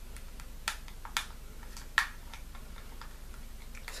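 Fingernails picking at the tape on a plastic powder blush case to open it: a few sharp clicks, three clearer ones in the first two seconds, with fainter ticks between.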